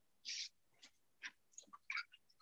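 Faint, short scratchy swishes of a watercolour brush being stroked across paper, the clearest one near the start, followed by a few fainter scratches.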